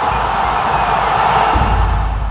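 Outro logo sound effect: a loud, steady rushing whoosh, with a deep low rumble swelling in about a second and a half in.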